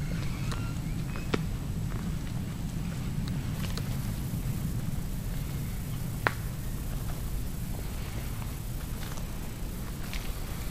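Steady low rumble of handling noise on a handheld camera moving through the woods, with scattered small clicks and snaps. A sharp tick comes about a second in and a louder one about six seconds in.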